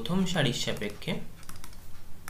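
A few sharp ticks and taps of a pen stylus on a drawing tablet as handwriting is written, in the second half.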